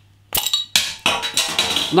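Crown cap of a glass beer bottle prised off with a bottle opener: one sharp pop about a third of a second in, followed by a hiss of carbonation gas escaping from the neck.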